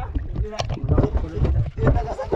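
Water slapping against the hull of an outrigger boat, with a quick run of knocks and bumps on the deck.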